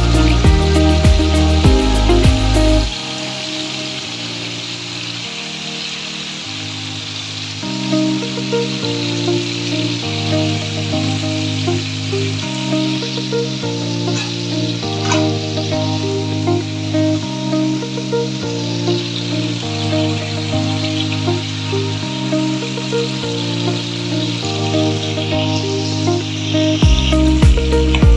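Pork belly slabs frying and sizzling in oil and sauce in a pan, under background music. The music's deep bass drops out about three seconds in.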